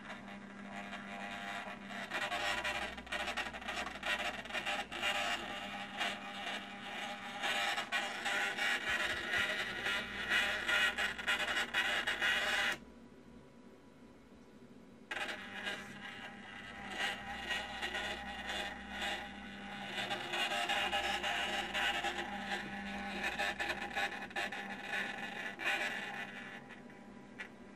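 Small electric motor driving a model elevator car along its shaft, running with a steady whirring, scraping sound. It stops suddenly about 13 seconds in, stays off for about two seconds, then starts again and runs until near the end. A steady low electrical hum lies underneath throughout.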